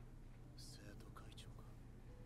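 Near silence: room tone with a low hum and a few faint, soft whisper-like sounds.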